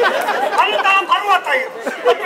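Speech only: spoken stage dialogue between actors, talking without pause.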